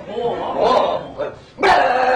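A man making short bark-like vocal noises with his voice. Near the end there is a sudden sharp onset into a long, steady held vocal note.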